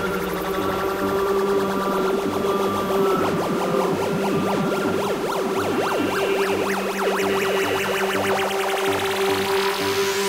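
Full-on psychedelic trance track: steady held synth tones over a pulsing bassline, with many quick swooping synth zaps through the middle. A rising sweep builds from about two-thirds of the way in and climbs steeply near the end.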